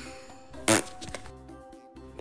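A single sharp click about two-thirds of a second in, over a faint steady background of held tones.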